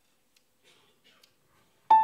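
Near silence with a few faint rustles, then near the end a piano chord is struck sharply and rings on, opening a live jazz number.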